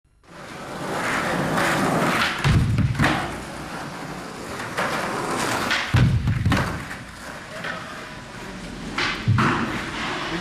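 Skateboard wheels rolling over a ramp, with three heavy board thuds about two and a half, six and nine seconds in.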